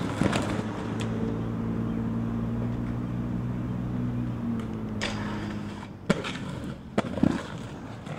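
Skateboard on concrete: sharp clacks of the board at the start and about a second in, a steady rolling hum of the wheels, then a run of clacks and landings in the last three seconds.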